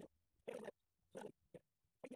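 Marker pen drawing lines on a whiteboard: three short scratchy strokes, the last one brief.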